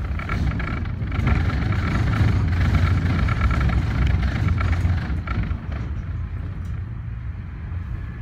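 Portland Aerial Tram cabin in motion: a steady low rumble with a faint whine over it, swelling louder for a few seconds in the middle and then easing off.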